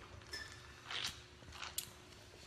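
Faint handling sounds of a stacked styrofoam cup being raised and sipped from: a few scattered light clicks and rustles, the loudest a short hiss-like slurp about a second in.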